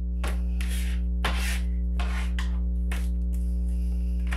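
A deck of tarot cards being handled and shuffled, a series of short papery rubbing swishes, over steady low background music.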